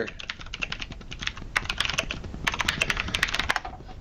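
Typing on a computer keyboard: a quick, irregular run of key clicks that thins out about three and a half seconds in.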